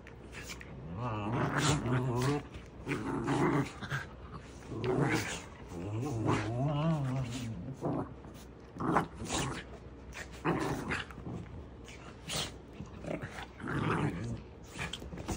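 Dogs and a puppy growling as they play-fight, in repeated bouts of low growls rising and falling in pitch, with a few short sharp sounds in the second half.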